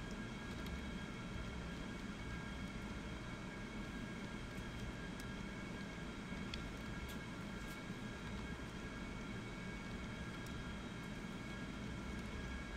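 Steady hum and hiss of a computer recording setup, with a few faint, scattered keyboard key clicks as numbers are typed into a spreadsheet.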